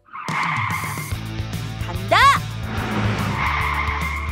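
Added sound effect of a race car driving off with tyres screeching, over background music. A short pitched cry that rises and falls comes about two seconds in.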